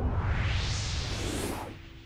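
A cartoon whoosh sound effect for a scene transition: a rushing noise that rises in pitch and fades out near the end.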